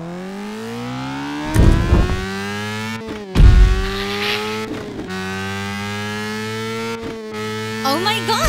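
Cartoon race-car engine sound effect accelerating: its pitch climbs over the first three seconds, then holds level, dipping briefly about every two seconds. Two short, loud noises cut in, about one and a half and three and a half seconds in.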